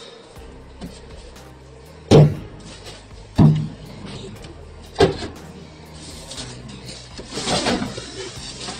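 Handling noises from bundles of banknotes and a cardboard box: three short knocks spaced a second or so apart, then a longer rustle near the end as a plastic-wrapped bale is moved.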